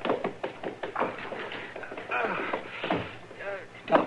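A man's wordless groans and gasps of pain from a gunshot wound, with a few light knocks, in a 1950s radio drama sound mix.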